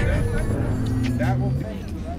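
A car engine running with a steady low note through the middle, under people talking.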